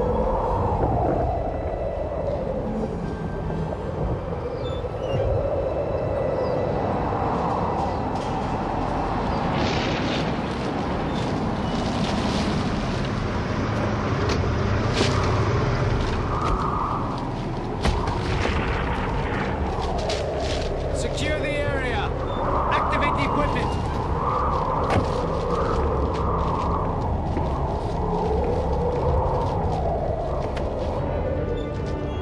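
TV drama soundtrack: a constant low rumble under slow, wavering, howling tones, with a run of sharp crackles and bangs from about a third of the way in to about two-thirds through.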